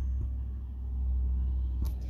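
A low, steady vehicle rumble heard inside a truck cabin, which steps up suddenly at the start and then holds. There is a faint click near the end.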